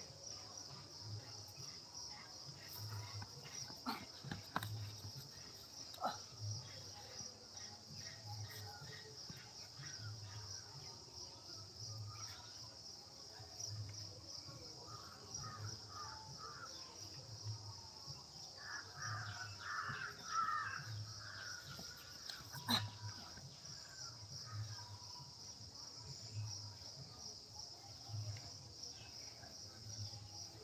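Outdoor ambience: a steady high insect trill, with birds calling in harsh caws, most strongly about two-thirds of the way through. A low pulse repeats about once a second, and there are a few sharp knocks.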